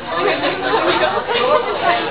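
Several girls' voices chattering at once, talking over each other so that no words stand out.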